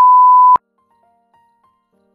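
A loud, steady electronic beep at a single pitch, lasting about half a second and cutting off suddenly. Faint, sparse background music notes follow.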